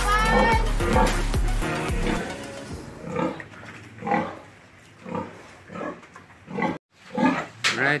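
Background music for the first two seconds, then domestic pigs grunting in short, separate calls, about one or two a second.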